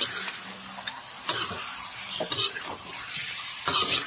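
Wet raw pork pieces being mixed in a bowl, a moist squelching and slapping over a constant hiss, with three louder bursts as the meat is turned.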